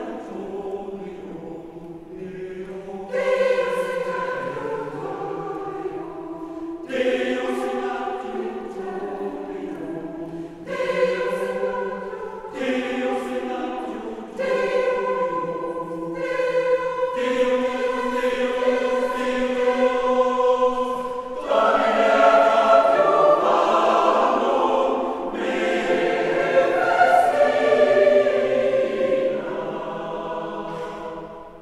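Mixed-voice church choir singing sacred music a cappella in a stone church, held chords with new phrases entering every few seconds. The singing swells to its loudest in the last third.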